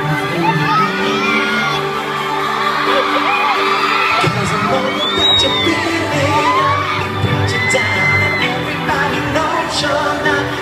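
Live pop music through an arena PA, the band's intro before the vocals, with a crowd of fans screaming over it. A bass line comes in about four seconds in.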